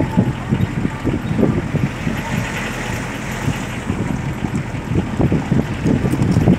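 A car driving along a wet road, heard from inside the cabin: a steady low rumble with many irregular low thuds, and a rise of tyre hiss in the middle.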